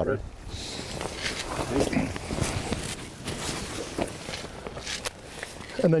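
Irregular footsteps and shuffling of boots on wet asphalt as people move around a boat trailer.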